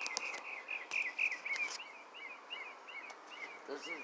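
A bird chirping in a quick series of short, repeated chirps, about three a second, tailing off after about three seconds.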